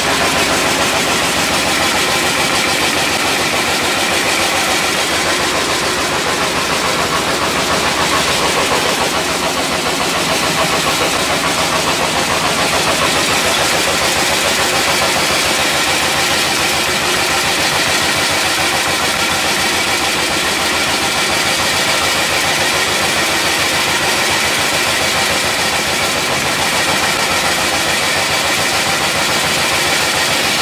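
CCM-003S carved cutting machine running steadily as it cuts wooden spoon blanks from wood veneer sheets fed into it.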